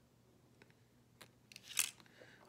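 A few faint clicks, then a short, louder scraping rattle near the end: a nail polish brush-cap being screwed back onto its glass bottle.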